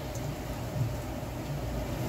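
Steady low hum and hiss of background room noise, with no distinct clicks or knocks.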